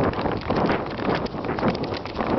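Quick, uneven footsteps swishing through grass, with rustling, handling noise and wind rumble on the hand-held camera's microphone as it swings.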